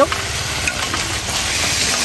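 Beef, tonkin jasmine flowers and chives sizzling steadily in garlic butter in a wide stainless-steel pan over a high flame.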